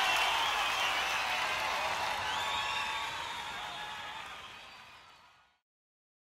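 Crowd noise with cheering, heavy in the upper range with little bass and no beat, fading steadily away to silence about five and a half seconds in.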